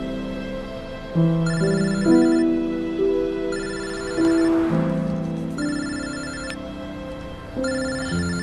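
A telephone rings with an electronic trilling ringtone, four rings about two seconds apart, over slow background music.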